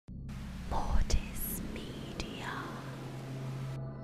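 Glitchy logo intro sting: a processed whispering voice over static hiss and a steady low drone, with two sharp glitch clicks about a second apart. The hiss cuts off suddenly near the end, leaving the drone.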